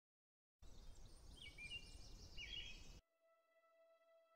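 Birds chirping over a low outdoor rumble, which starts about half a second in and cuts off suddenly about three seconds in. A faint held musical note follows.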